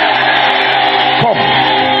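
Sustained keyboard chords held under a loud, even roar of congregation voices, with one short spoken word from the preacher a little over a second in.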